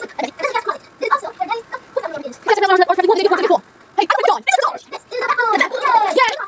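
Indistinct voices playing back through a television's speakers, with one long, drawn-out vocal sound about two and a half seconds in.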